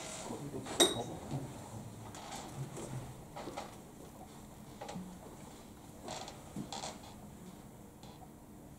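A quiet room with a few scattered light clicks and taps. The sharpest comes about a second in: a short clink with a brief ring.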